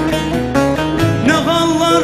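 Turkish folk (türkü) music, an instrumental passage with an ornamented melody over a plucked-string accompaniment.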